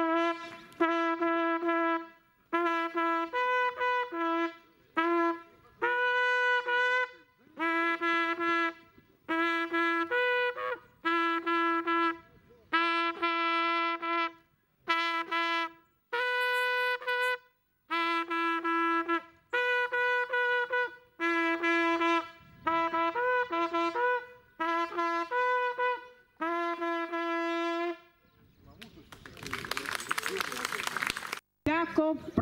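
Long wooden folk horn blown solo, playing a fanfare-like tune on a few natural-overtone notes: short and held notes in phrases broken by brief pauses. The playing stops about a second and a half before the end.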